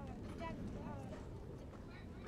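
Indistinct speech over a steady low outdoor rumble.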